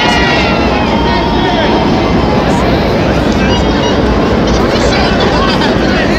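Spectators' voices chattering and calling out along the parade route, over a steady low rumble of outdoor street noise.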